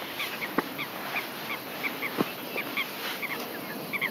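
Short high chirps repeating irregularly, about two to three a second, over a steady outdoor hiss, like a small bird calling. A couple of faint clicks are also heard.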